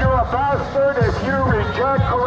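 Loud, high-pitched voices in continuous wails that rise and fall about every half second, with lower voices beneath.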